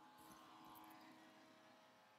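Near silence with a very faint, steady motor whine from a document scanner finishing its preview scan.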